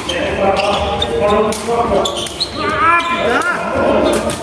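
Several people talking and calling out, echoing in a large sports hall, with a few sharp knocks on the court floor.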